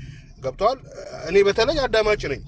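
Speech only: a man talking, with a briefly drawn-out vowel a little after halfway.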